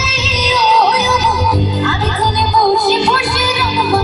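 A woman singing a wavering, ornamented melody live, with a band of keyboards and rhythm behind her, all amplified through a stage sound system.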